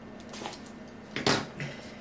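A small cardboard box being handled and opened: a faint rustle about half a second in, then a brief, louder scrape of the cardboard flap a little after a second.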